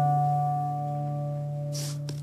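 A final chord on an acoustic guitar left to ring, fading slowly. Near the end there is a brief rustle.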